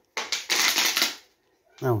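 Plastic water bottle crackling as it is squeezed in the hand, a burst of crinkles lasting about a second.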